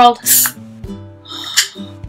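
Aluminium soda can of cola opened by its pull tab: a sharp crack and hiss of escaping carbonation about a third of a second in, and a second, weaker burst of hiss about a second and a half in.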